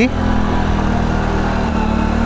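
Motorcycle engine running steadily under load as it labours up a steep climb, its pitch easing slightly near the end.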